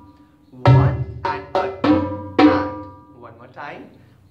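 Hand strokes on a set of three tall conga drums playing the first part of a slow keherwa rhythm twice over. A deep bass-drum stroke lands with the high drum on each first beat, followed by quicker high- and mid-drum strokes, each note ringing briefly.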